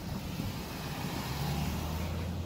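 A motor vehicle's engine running, a low hum that grows louder in the second half, over a steady hiss.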